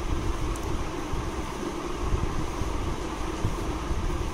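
A steady mechanical hum with a low rumble and a faint constant tone, the kind of noise a room fan makes.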